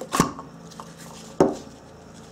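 Two sharp plastic clicks about a second apart as an old cartridge oil filter element is worked off its plastic housing cap.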